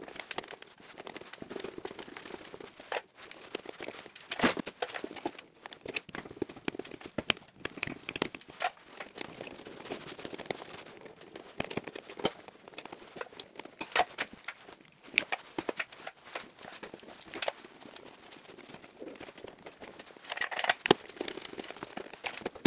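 Hand work on the wiring of an electrical distribution board: cables rustling as they are bent and routed, with irregular clicks and knocks against the plastic and metal of the board and its circuit breakers, and a denser run of clicks near the end.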